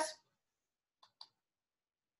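Near silence, broken by two faint, short clicks about a second in.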